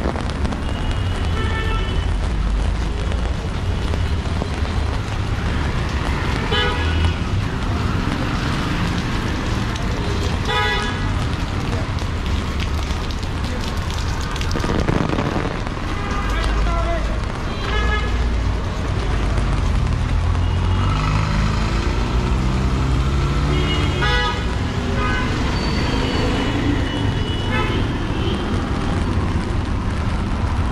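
City street traffic: a steady low rumble of passing vehicles with short vehicle horn toots sounding again and again, about every few seconds.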